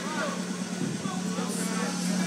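Faint background voices of people talking, over a steady low hum and general room noise.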